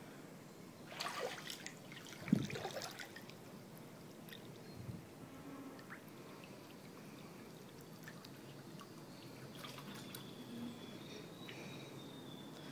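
Faint pool water lapping and trickling as a floating body is drawn through it, with two brief louder sloshes about one and two seconds in.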